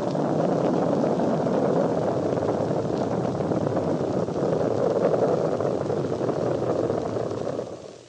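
Rocket engines at liftoff: a steady, rushing roar of exhaust that fades out near the end.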